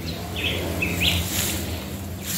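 Outdoor background noise with two short bird calls, about half a second and a second in, over a low steady hum.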